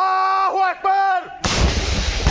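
A man's long, two-part shout, then about one and a half seconds in the sudden blast of a shoulder-fired RPG-type rocket launcher being fired, with a loud rushing noise carrying on after it.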